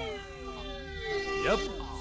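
Animated-film soundtrack: a pitched note with its overtones slides downward, then holds steady until near the end. A character's short, wavering vocal 'yup' cuts in about one and a half seconds in.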